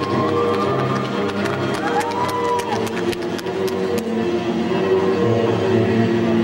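Music for a synchronized swimming routine, played over a pool's loudspeakers and picked up by the camcorder. A quick run of sharp ticks sounds from about one to four seconds in, with some crowd noise underneath.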